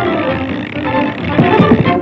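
Early-1930s cartoon orchestral score, with a pitch glide sliding downward at the start and a flurry of short sliding notes and sharp accents a little past the middle.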